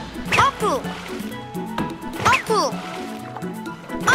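Animated children's song music with a stepping bass line, with two quick downward-sliding cartoon sound effects, about a third of a second in and again about two seconds in.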